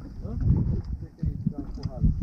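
Indistinct voices talking over a low rumble of wind and water on an open boat.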